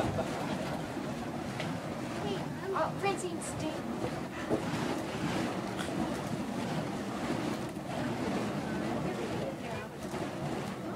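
Burning fire poi whooshing as they are swung in circles: a steady rushing noise, with faint voices underneath.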